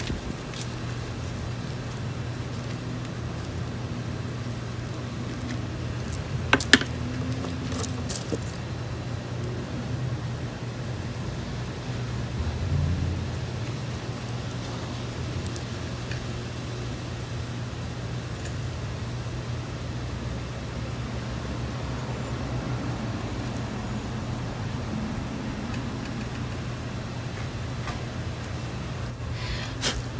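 A steady low hum, with a few light clicks about seven and eight seconds in and a soft low bump a little later, as hands work soil around potted succulents.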